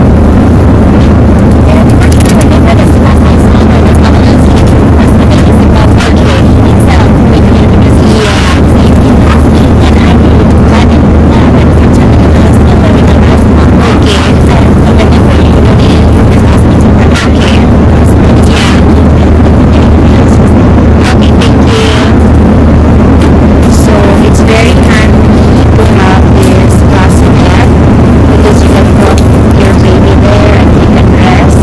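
Loud, steady low drone of an airliner cabin in flight, the engine and airflow noise heard throughout, with occasional short clicks and rustles on top.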